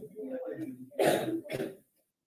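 Low indistinct voice, then a loud throat-clearing cough about a second in and a shorter one just after, heard over video-call audio that cuts off suddenly near the end.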